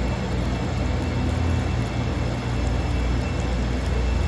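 Steady, loud rumble with an even hiss on top inside a large, empty steel warehouse, with no distinct knocks or strikes.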